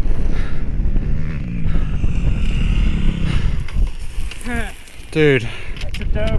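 Four-stroke dirt bike engines running low, near idle, a rough steady rumble; one of them is a Husqvarna FC350's single-cylinder engine. Two short voice sounds come near the end.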